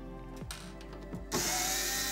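Cordless drill-driver whirring as it backs a screw out of the separator's sheet-metal housing, starting about one and a half seconds in after a quieter moment with a couple of light clicks.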